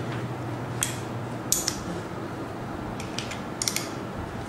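A handful of light clicks and ticks from a metal wire polarization grill being handled and turned in its holder, over a steady low hum.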